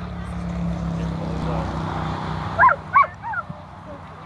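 Australian Cattle Dog barking three short, sharp, high-pitched barks in quick succession near the end, over a steady low hum in the first half.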